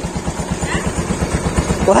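An engine idling steadily, a low even throb of roughly nine or ten beats a second.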